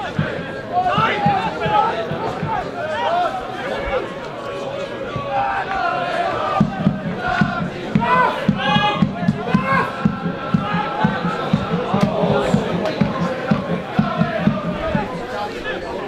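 Football crowd chanting and shouting, with many voices overlapping. From about six and a half seconds in, a steady beat of about three strokes a second runs under the singing.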